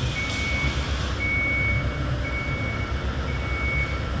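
Backup alarm on a piece of construction machinery, sounding four beeps of a single high tone about one a second, over a low, steady engine rumble.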